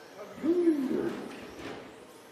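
A man's brief hooting "ooh" exclamation, rising and then falling in pitch, lasting about half a second.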